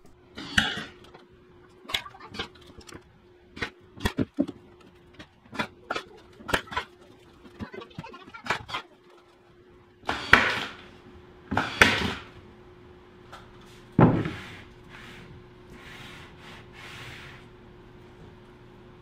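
MDF panels being fastened and fitted into a box frame: a run of short, sharp clicks and knocks, then three louder wooden clunks about ten, twelve and fourteen seconds in. A faint steady hum runs underneath.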